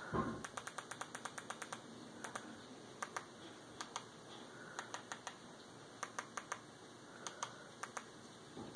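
Faint runs of quick, light clicks, several in a row then a pause, repeating: button presses on a remote control stepping the cursor across an on-screen keyboard to enter a web address.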